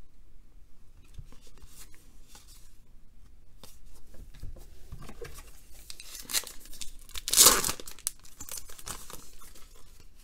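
Trading cards handled and shuffled with light rustling and small clicks, then a card pack's wrapper torn open in one loud rip about seven and a half seconds in.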